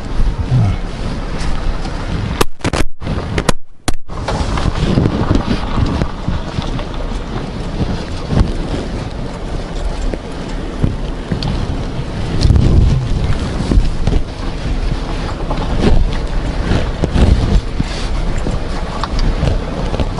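Wind buffeting the microphone over the low rumble of a vehicle driving. The sound cuts out twice, briefly, about two and a half and three and a half seconds in.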